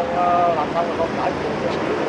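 Steady city street traffic noise, mostly motorbikes passing. In the first second a voice holds a drawn-out hesitation sound.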